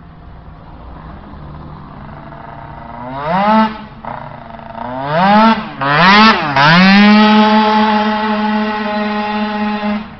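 Tuned two-stroke moped engine accelerating hard as it comes past. It revs up in four rising sweeps, about three, five, six and six and a half seconds in, with short drops between them as the rider shifts or eases off. It then holds a loud, steady high pitch at full throttle.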